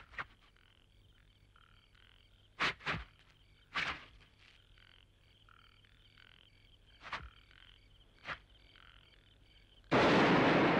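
A faint chorus of frogs croaking steadily in the background, with about six short, sharp knocks over it, the loudest a few seconds in.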